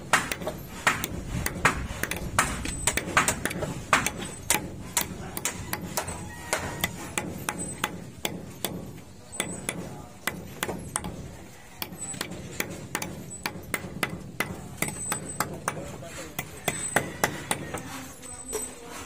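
Claw hammers pounding on the timber scaffolding and formwork: sharp, irregular blows, several a second, sometimes overlapping, from more than one worker.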